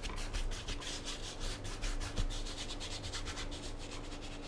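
A wide flat brush scrubbing oil paint onto a stretched canvas in rapid back-and-forth strokes, a dry rubbing swish with each pass.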